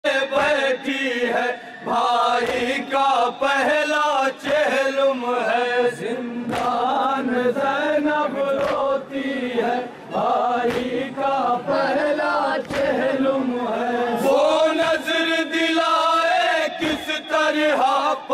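A group of men chanting a noha, a mournful lament, together in a steady melodic line. Sharp slaps of palms striking chests (matam) come through the chanting.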